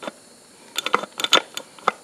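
A quick run of about eight light, sharp metal clicks and taps, bunched in the second half, from the shift drum and shift forks of a Yamaha FZ 150's open gearbox being moved by hand.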